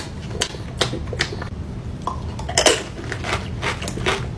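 Metal spoon clicking and scraping against an ice cream cup while eating, a string of short clicks with the loudest cluster about two and a half seconds in, over a low steady hum.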